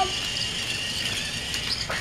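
Battery-powered TrackMaster Thomas toy engine's small motor and gears whirring steadily as it climbs plastic track, with a light click near the end.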